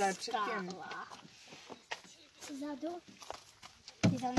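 Speech in two short, quiet phrases with a pause between them.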